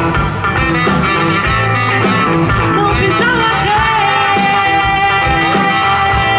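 Live band playing: saxophone lead over guitar, double bass and drum kit, with one long note held through the second half.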